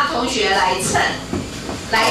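A woman speaking through a handheld microphone.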